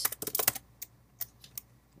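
Typing on a computer keyboard: a quick run of keystrokes in the first half second, then a few single key clicks spaced apart.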